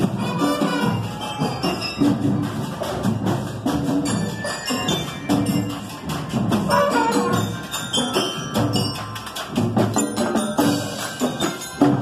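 Marching band playing: snare drums, tenor drums, bass drum and crash cymbals beating a steady rhythm, with bugles playing over the drums.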